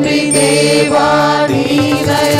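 A group of women singing a devotional song in unison into microphones, holding long notes. Tabla strokes drop out early on and come back near the end.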